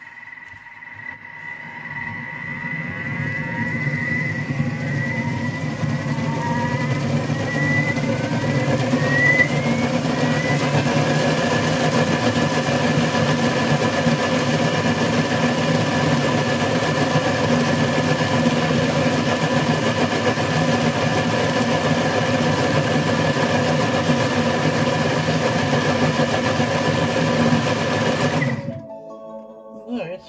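Thermomix food processor blending a bowl of hot cooked apples into purée at speed 8. The blade motor spins up over the first few seconds, with a whine that rises in pitch about 8 to 10 seconds in. It then runs steadily at full speed and stops suddenly near the end.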